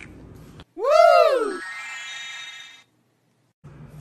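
Edited-in sound effect: a pitched tone that swoops briefly up and then falls, followed by a quieter held ringing tone that stops abruptly, then a short stretch of dead silence.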